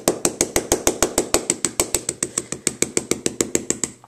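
Rapid, even tapping of an ink pad against a stamp to ink it, about eight light knocks a second.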